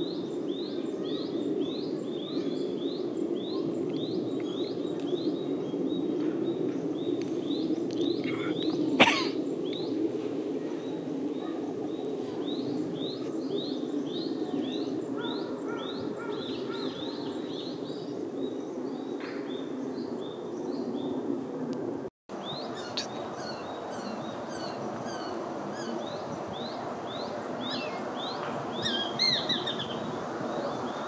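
A bird calling in a long series of short high chirps, two or three a second, pausing now and then, over a steady low background rumble. A single sharp knock stands out about nine seconds in.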